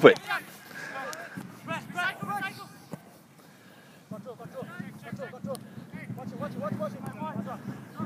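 Faint, distant voices of footballers calling to each other on an open pitch during play, with about a second of near silence around three seconds in.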